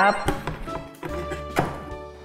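Empty metal can dropped into a plastic recycling bin: a few light taps, then one clear thunk about one and a half seconds in, over quiet background music.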